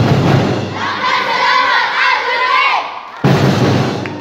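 Festival drumming with a crowd of children shouting and cheering. The drums fade out early, leaving a couple of seconds of cheering voices, then come back in suddenly and loudly near the end.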